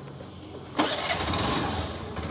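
Small petrol scooter engine, which had been refusing to start, catching about a second in and running.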